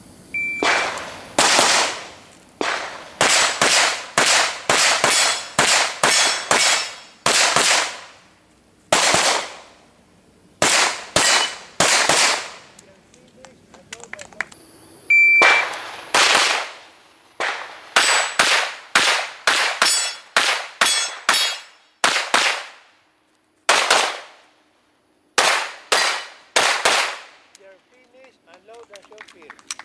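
A shot timer's short high beep, then a long string of pistol shots, many fired in quick pairs with short pauses between. About halfway through, the beep and another string of shots come again.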